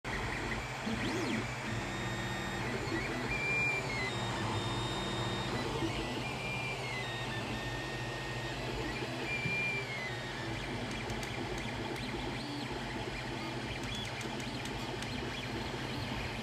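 Creality Ender 3 3D printer printing in PLA: its stepper motors whine at pitches that slide up and down and shift every second or two as the print head speeds up, slows and changes direction, over the steady hum of its cooling fans.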